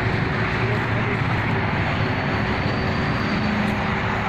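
Steady outdoor background rumble, loud and even throughout, with a faint low hum and no distinct events.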